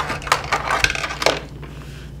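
A handful of short knocks and scrapes as a leather-hard clay pot and tools are handled at a pottery wheel, bunched in the first second and a half, the loudest right at the start.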